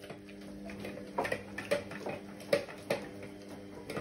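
Dog eating from a raised metal food bowl: irregular sharp clicks and clinks as its mouth and teeth knock the bowl while it eats, over a steady low hum.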